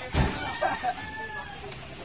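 A sack of cement thrown down onto a stack lands with a heavy thud just after the start. A rooster crows after it.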